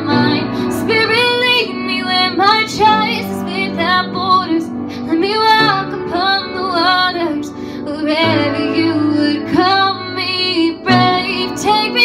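A woman singing a slow worship song solo, her voice gliding through a sustained melody over steady held accompaniment notes.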